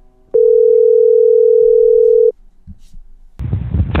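Telephone ringback tone: one steady ring of about two seconds as an outgoing call rings through, before a call-centre agent's voice answers near the end.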